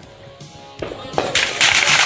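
Fireworks going off over background music: after a quieter start come a couple of sharp bangs about a second in, then a dense crackling.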